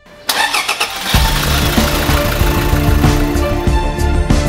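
A Toyota Fortuner's engine cranking and starting, after a moment of near silence, with loud music with a heavy beat coming in about a second in.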